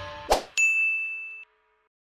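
End-card sound effects: the tail of a chiming jingle fades, then a quick swoosh and a bright bell-like ding. The ding rings about a second and stops abruptly, the notification-bell cue of the subscribe animation.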